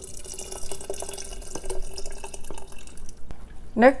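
Orange juice pouring in a steady stream into a tall glass jar of chopped strawberries, fruit and chia seeds, splashing with small drips. The pour stops a little after three seconds in.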